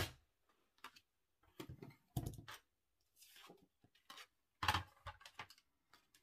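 Cardstock being handled and a scoring board set down on the tabletop: a series of light knocks and clicks, with a short paper rustle about three seconds in.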